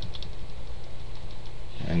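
Steady low electrical hum of the recording's background, with a few faint clicks just at the start as the F8 key is pressed on the keyboard.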